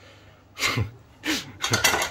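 Handling noise from a metal magneto flywheel turned in a gloved hand: two brief scrapes about half a second apart, then a few quicker ones near the end.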